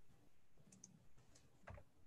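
Near silence with a few faint, short clicks, a cluster about a second in and another near the end.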